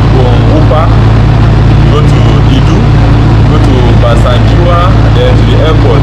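Steady low hum and rumble of a light-rail metro carriage's interior, with a man's voice talking over it.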